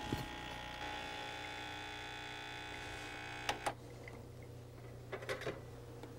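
Starbucks Barista espresso machine's pump buzzing steadily as it brews a shot of espresso, then stopping with a click about three and a half seconds in when the brew button is pressed at the one-ounce line.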